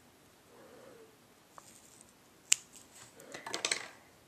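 Scissors cutting strips of foam tape: one sharp snip about two and a half seconds in, then a quick run of small clicks and snips near the end.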